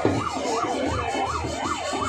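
An electronic siren in a fast yelp, its pitch rising and falling evenly about three times a second.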